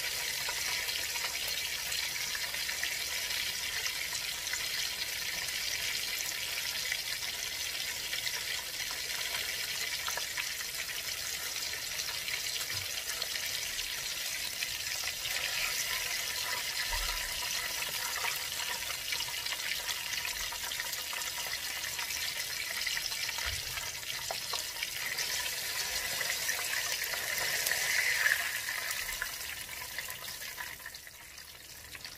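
Battered chicken legs deep-frying in hot oil in a cast-iron skillet: a steady sizzle and crackle of bubbling oil, swelling briefly louder near the end.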